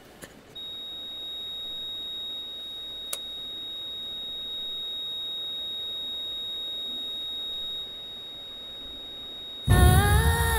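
Patient heart monitor flatlining: one unbroken high beep tone held for about nine seconds, the sign that the patient's heart has stopped. Music with singing comes in loudly near the end.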